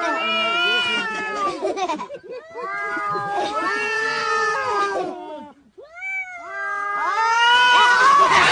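Cat yowling in three long, wavering calls with short breaks between them, the last growing louder near the end.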